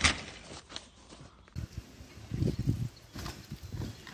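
A sharp thump right at the start, as a mountain bike crash-lands on dirt, then scattered dull low thuds and faint clicks.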